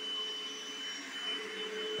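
Bissell SpotClean portable carpet cleaner running steadily: a constant motor hiss with a thin, steady high whine.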